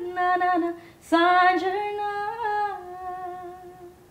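A woman's voice singing a wordless melody unaccompanied: a short phrase, then from about a second in a longer held note that slowly fades.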